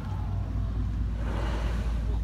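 A boat's engine running with a steady low rumble and hum, with a brief rush of hiss about a second and a half in.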